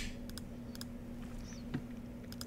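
Several light clicks of a computer keyboard and mouse, with one louder soft knock about three-quarters of the way through, over a steady low hum.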